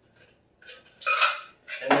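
Stainless steel cocktail shaker clinking and knocking as it is set down on the table after straining, a few metallic clinks with the loudest, briefly ringing one about a second in.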